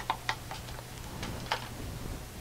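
A few light clicks and taps of plastic paint cups being handled and set down, the strongest near the start and one about one and a half seconds in, over a steady low hum.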